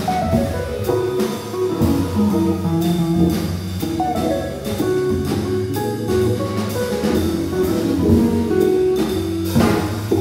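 Live jazz from an organ trio: electric archtop guitar, organ playing the chords and the bass line, and drum kit with ride cymbal, all playing steadily together.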